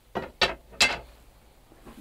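Three short clacks of objects being handled on a bow maker's workbench, coming in quick succession within the first second, the last the loudest.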